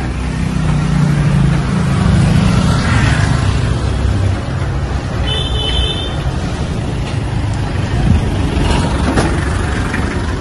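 Street traffic: passing vans and cars running with a low engine rumble, heaviest in the first few seconds. A brief high-pitched beep comes a little past halfway.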